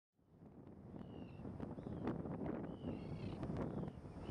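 A handful of short, high whistled bird calls over a low wind rumble, with a few faint clicks.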